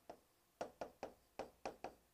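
Pen tips tapping and clicking on the glass of a touch-screen display while handwriting: a series of faint, short, irregular taps.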